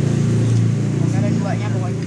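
Indistinct voices over a loud, steady low hum.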